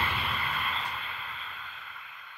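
The fading tail of an intro sound effect: a hiss dying away steadily after a sudden hit.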